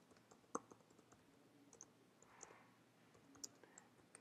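Faint, sparse keystrokes on a computer keyboard: a handful of scattered clicks, the clearest about half a second in.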